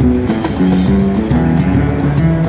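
Live duo of a nylon-string guitar and a cajon: picked guitar notes over a running pattern of hand strikes on the cajon's front face.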